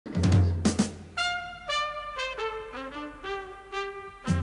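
Instrumental intro of a 1971 pop song: two short full-band hits with bass in the first second, then a brass melody stepping down in pitch note by note, about two notes a second.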